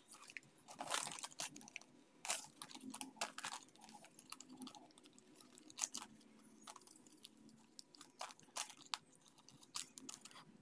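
Scrap gift-wrapping paper crinkling as it is handled and folded by hand: faint, irregular crackles scattered throughout.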